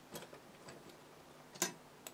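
A few small, sharp clicks from hands working fly-tying tools and materials at the vise, with the loudest click about one and a half seconds in.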